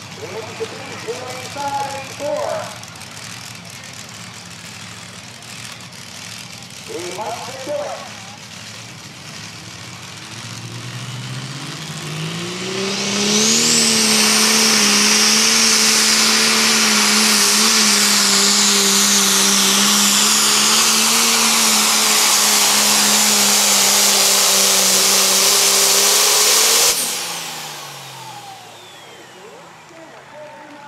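John Deere super stock pulling tractor engine: running low for the first ten seconds, then revving up and held at full throttle, with a high whistle above it, for about thirteen seconds as it drags the weight sled. Near the end the throttle is cut suddenly and the pitch drops away.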